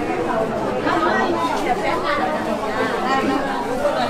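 Many people talking at once: a steady background of overlapping conversation, with no single voice standing out.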